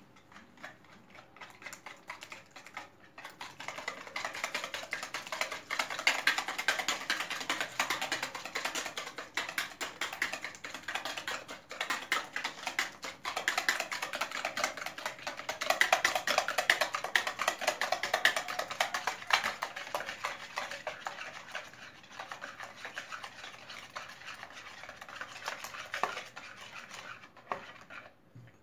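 Wire whisk beating eggs and sugar in a plastic bowl: a fast, steady scraping and clicking of the wires against the bowl. It starts softly and grows louder a few seconds in as the beating speeds up.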